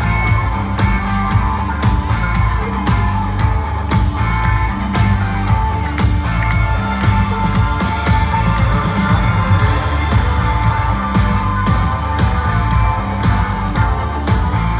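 Live rock band playing on stage, with heavy bass, sustained keyboard or guitar tones and a steady drum beat, heard from within the concert crowd.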